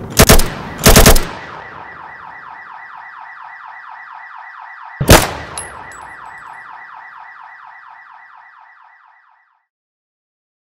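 Loud gunshots from an AK-47-style rifle in the first second or so, followed by a car alarm sounding with a fast, repeating pulsed tone. One more shot comes about five seconds in, and the alarm fades away shortly before the end.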